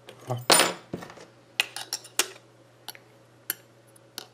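A flat metal spudger clicking against the magnetic metal plate on the back of a multimeter's rubber holster, snapping onto the magnet and being pulled off again: a scrape about half a second in, then a string of sharp, irregular metallic clicks.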